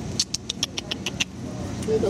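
Rabbit chewing: a quick run of about eight short, crisp clicks over about a second, over a steady low background rumble.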